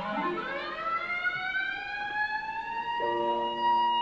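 Solo clarinet playing a long, slow upward glissando, sliding smoothly over about two octaves. About three seconds in, the big band enters with a held chord under the clarinet's top note.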